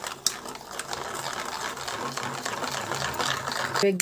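Wire whisk beating a thin batter in a steel bowl: a fast, steady rattle of the wires against the metal.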